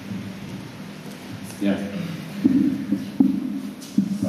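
Indistinct speech from a man close to a microphone, starting about one and a half seconds in, with a brief knock a little after three seconds.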